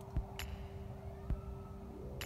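Low, steady hum of a car cabin: a constant drone with one steady tone over a low rumble, and a few faint clicks.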